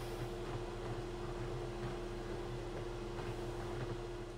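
A steady mechanical hum over an even hiss, like a small fan motor running. It holds one constant low tone and tails off slightly near the end.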